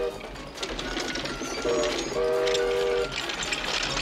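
Cartoon sound effects of a ramshackle wooden food-processing machine running: clattering and rattling, with a steady three-note whistle that toots briefly about a second and a half in, then sounds again for nearly a second.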